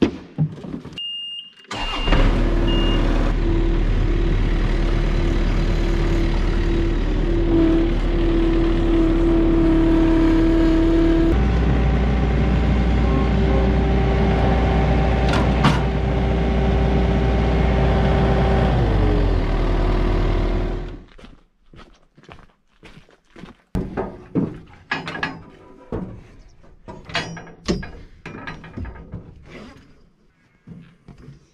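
A ride-on mower's small engine starts about two seconds in, just after a short electronic beep, and runs steadily. It revs up partway through, drops back and cuts off about two-thirds of the way in, followed by scattered knocks and clicks.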